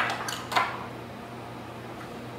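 A few light clinks and clicks from lab bottles and plastic tubes being handled on the bench, all within the first half second or so, over a steady low hum.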